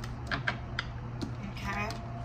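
A few sharp, light taps and clicks from hands handling cards and small objects on a tabletop, over a low steady hum.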